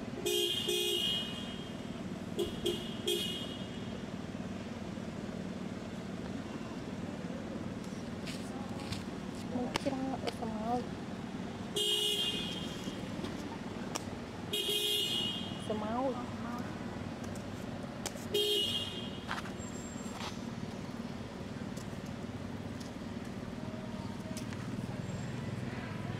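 Vehicle horns on a nearby road tooting in short blasts, about five in all: one near the start, one around three seconds in, then three more in the second half, over a steady low traffic rumble.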